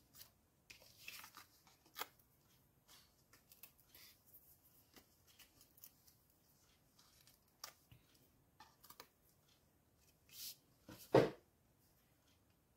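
Cardstock and paper being handled on a craft mat: scattered light rustles and small taps. Near the end there is a brief swish, then a sharper knock.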